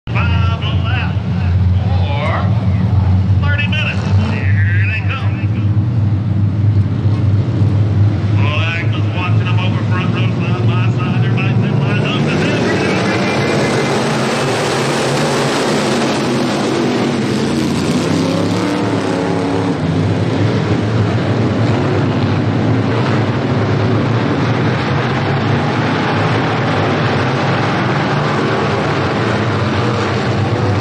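A field of dirt-track stock cars running as a pack, their engines rumbling steadily at low speed. About twelve seconds in the sound swells into many engines at full throttle, with rising whines as the pack accelerates and passes.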